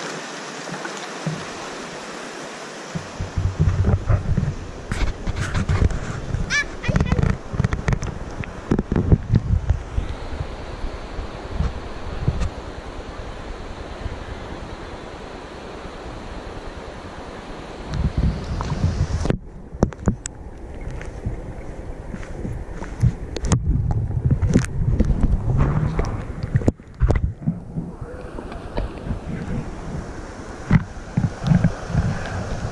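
River water sloshing and splashing around an action camera held at the surface, with heavy bumping and wind buffeting on the microphone. In the second half the sound goes muffled for moments several times as the camera dips under the water.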